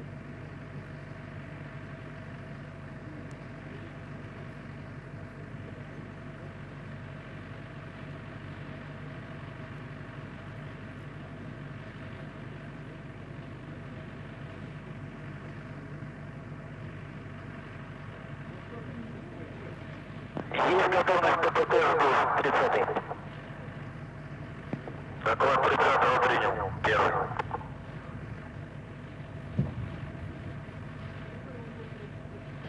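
Steady low hum of the launch pad's live audio feed, broken about twenty seconds in and again about twenty-five seconds in by two loud bursts of a voice, each two to three seconds long.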